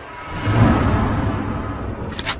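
Cinematic intro sound effect: a whoosh with a deep rumble that swells about half a second in, then slowly fades.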